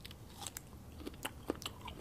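Close-up chewing of snake fruit (salak): faint, scattered wet mouth clicks and soft crunches as the fruit is bitten and chewed.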